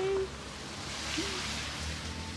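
A young child's voice ends a short held call right at the start. A soft, even hiss follows, with a faint short vocal sound about a second in.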